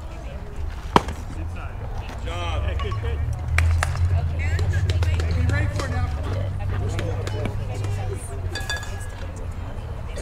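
People's voices talking, with one sharp crack about a second in and a low rumble through the middle.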